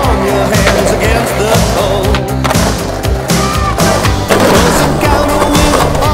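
Skateboard wheels rolling on concrete pavement, with a sharp board clack about four seconds in, under a loud music track.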